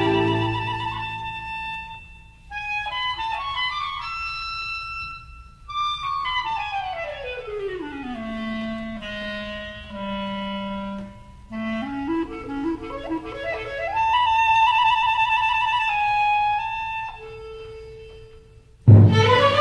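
Background music: a solo woodwind melody, clarinet-like, over a held chord that fades out in the first two seconds. About a third of the way in it falls in a long descending run to low notes, then climbs back up and ends on a held note.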